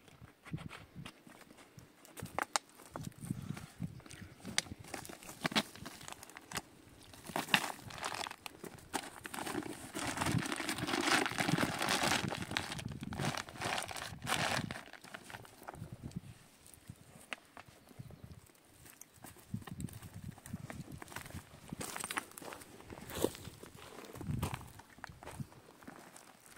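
Plastic water bottles crinkling and rustling as they are packed into a woven cloth bag, loudest in the middle, with scattered scuffs and footsteps on loose stony ground.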